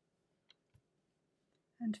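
Near silence: room tone, with two faint clicks about half a second in.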